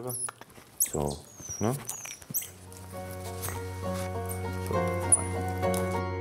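High-pitched squeaks and chirps from small monkeys, thickest in the first half. Background music with held notes and a steady bass comes in about halfway.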